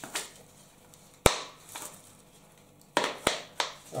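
Handling of a round magnetic action-camera mount: one sharp click a little over a second in, then a few lighter clicks and rattles near the end.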